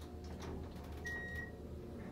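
Inside a moving AC geared traction elevator car: a steady low hum with faint clicks and rattles. About a second in comes one short high beep, the car's floor-passing tone as the floor indicator steps down.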